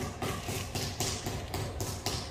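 Rapid, regular tapping knocks, about four a second, from builders' hand tools at work on a house being finished.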